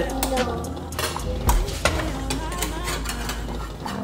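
Pancake batter stirred in a plastic cup, the utensil knocking and scraping the sides in quick irregular clicks, over the sizzle of bacon frying in a pan.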